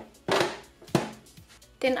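Hard plastic parts of a Nicer Dicer Chef food chopper knocking together as an attachment is handled and set onto its plastic container: a clack about a third of a second in and a sharp click just under a second in.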